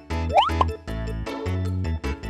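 Upbeat background music with a bouncy, repeating bass line and short notes, with a quick rising pop sound effect about half a second in.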